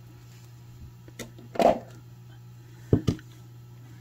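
Light metallic clicks and taps from steel jewelry pliers and a small chain being handled as the pliers are taken off a just-closed chain link and put down, with two sharper clicks close together near the end.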